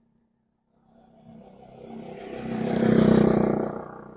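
A motor vehicle passing close by on the road: its engine and tyre noise swell up from about a second in, are loudest near three seconds, then fade away.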